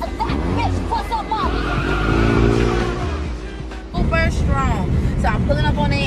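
A car engine rising in pitch over music and voices, then, from about four seconds in, a steady low road rumble inside a moving car.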